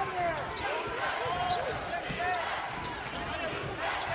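Basketball being dribbled on a hardwood court during live play, with arena crowd noise and voices throughout and short pitched sounds scattered over the din.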